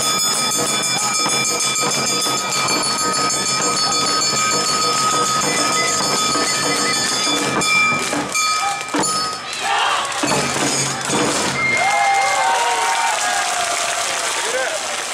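Awa Odori street band (narimono) playing for a dancing troupe: a high note is held over a steady beat of drums and gongs. The held note breaks off about nine seconds in, and a new phrase of sliding pitched lines follows.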